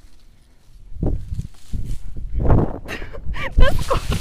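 Branches and leaves rustling and cracking as a person pushes and slides down through dense bushes, starting about a second in and getting busier, with a hard thump near the end. Short vocal grunts or exclamations come in over the last second or so.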